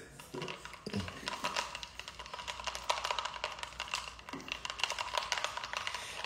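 Faint music with a fast clicking percussion beat.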